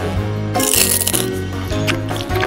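Upbeat background music, with a short crunch from about half a second to one second in as teeth bite into a hard blue candy stick.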